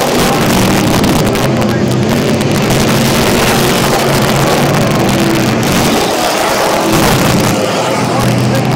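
Several street stock race cars' engines running loud and steady as the cars circle a dirt oval track.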